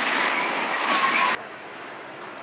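Steady rushing wind and water noise from a foiling AC50 racing catamaran sailing at speed, with a brief laugh from a crewman. About a second and a half in, it cuts off abruptly to a much quieter background.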